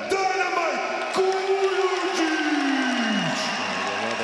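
A man's announcing voice introducing a fighter, with one long drawn-out call starting about a second in that holds its pitch, then slides down and fades out near the end.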